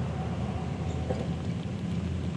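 Steady low background rumble with a faint even hiss, with no distinct knocks or clicks.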